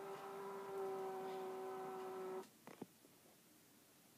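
Somfy battery-operated R-28 tubular motor raising a Roman shade, its lift cords winding onto the tube: a steady hum that stops abruptly about two and a half seconds in, followed by two faint clicks.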